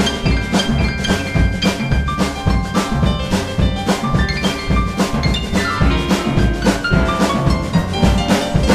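Boogie-woogie band playing an instrumental passage: grand piano to the fore over a steady drum beat, with runs of notes falling in pitch in the second half.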